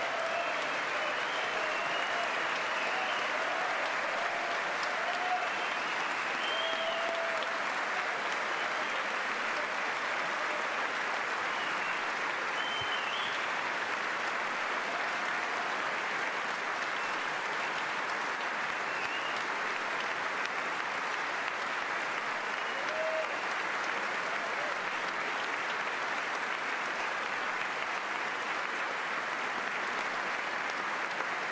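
A large audience giving sustained, steady applause in a big hall, a standing ovation, with a few faint voices rising out of the crowd now and then.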